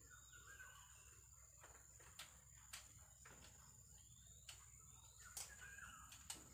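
Near silence: faint outdoor ambience with a few faint bird chirps, a steady high faint tone, and a few small clicks.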